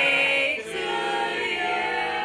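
Voices singing together in long held notes, choir-like, with little instrumental backing.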